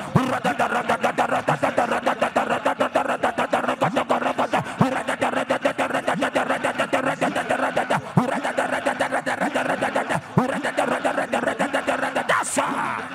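A man's voice through a microphone and PA, delivered as a fast, unbroken stream of short clipped syllables at about seven or eight a second.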